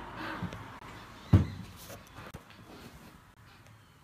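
Handling noise: one sharp knock about a second and a half in, with faint rustles and small clicks around it that die away toward the end.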